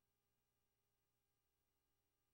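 Near silence: only a very faint, steady electrical hum and hiss.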